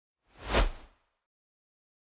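A single whoosh sound effect for a logo intro, swelling and fading within about half a second over a deep low rumble.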